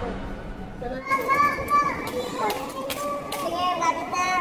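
A child's high-pitched voice calling out from about a second in, in several drawn-out calls, with a few sharp clicks among them.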